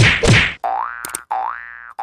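Cartoon-style editing sound effects: a whoosh with a low thud, then two springy boings, each gliding up in pitch and levelling off, with a sharp click during the first boing.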